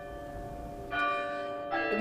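Church bells ringing, several pitches sounding together and ringing on, with a fresh strike about a second in.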